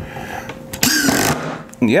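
Porter-Cable 20V cordless impact driver driving a screw into a wood board: one short, loud burst about a second in.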